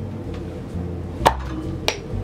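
Crown cap of a glass beer bottle knocked off against a table edge with a hand smack: one sharp smack about a second in, then a lighter click shortly after as the cap comes away and the bottle foams open.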